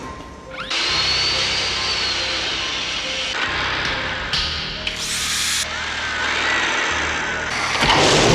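Handheld power tool motor starting up with a quickly rising whine about a second in, then running and slowly sagging in pitch, with a second rise a few seconds later. A sudden loud rush comes in near the end as flame bursts from the tool's head. Film score music plays underneath.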